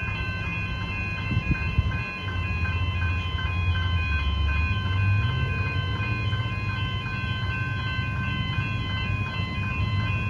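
Railway level crossing's electronic warning bells ringing in a fast, even repeat. A low rumble builds underneath from about two seconds in, with a couple of knocks shortly before it.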